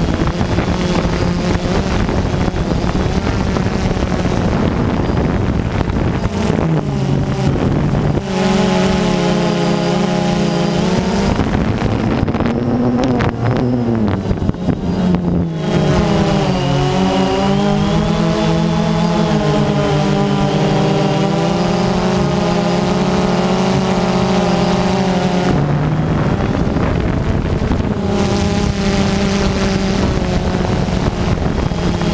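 DJI Phantom 2 quadcopter's motors and propellers buzzing, recorded by the camera on the drone itself, with wind on the microphone. The buzz's pitch wavers and shifts with the throttle as the drone climbs from near the ground to height, and the tone is strongest in the middle stretch.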